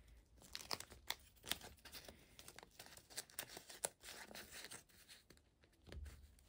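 Faint, irregular crinkling and small clicks of clear plastic binder sleeves being handled as paper labels are pushed into their pockets.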